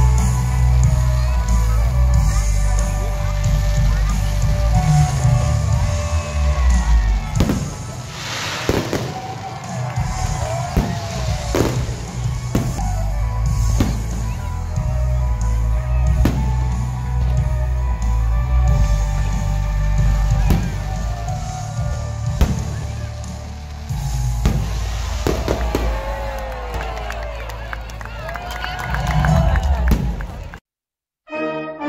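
Fireworks show soundtrack music with a heavy bass, mixed with fireworks going off in sharp bangs and pops. The bangs come thickest a third of the way in, while the bass briefly drops away.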